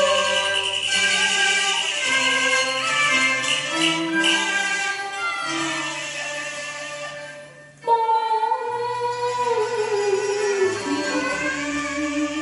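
Cantonese opera song: a woman singing into a microphone over instrumental accompaniment with bowed strings and held bass notes. The melody fades away at about seven and a half seconds, then a new phrase starts abruptly and slides downward.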